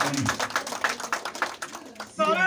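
A group of people clapping their hands in a quick, uneven patter that thins out and gets quieter in the last half second.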